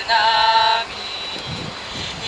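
Voices singing a Polish Christmas carol hold the last note of a line, which breaks off a little under a second in, leaving a steady low hum of city traffic.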